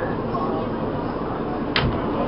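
Steady rumble of a NYC subway car in motion, heard from inside the car, with one sharp click near the end.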